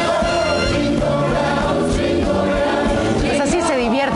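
Music with a group of voices singing together over a steady beat: a Christmas song sung along on stage.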